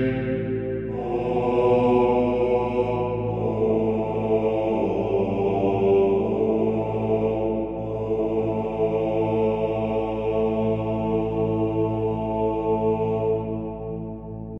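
Background music in the style of Gregorian chant: voices holding long, slow notes, moving to new notes about a second in and again around three seconds in.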